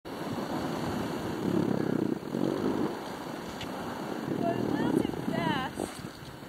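Steady hiss and scrape of sliding downhill over snow, with wind on the microphone, louder in two stretches; a voice calls out briefly near the end.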